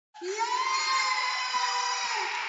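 A crowd of children shouting and cheering, with long held yells, cutting in suddenly after a moment of dead silence.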